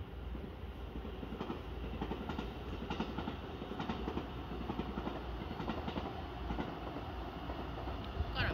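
Electric train running along the tracks, its wheels clattering quickly and irregularly over rail joints, over a steady low rumble.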